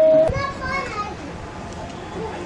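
A long, held vocal cry that breaks off abruptly just after the start with a click, followed by about a second of high, sliding voice sounds.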